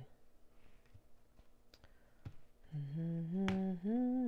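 A woman humming, coming in about two-thirds of the way through and stepping up in pitch. Before it is a quiet stretch with a few faint clicks of tarot cards being handled.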